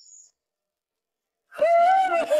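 Isolated a cappella singing voice: after near silence broken by a faint, brief high chirp at the start, the voice comes in about one and a half seconds in on a held, slightly gliding note.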